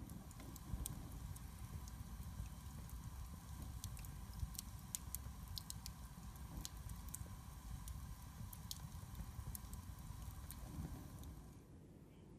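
Log fire burning in a fireplace, crackling with scattered sharp pops over a low, steady rumble of the flames.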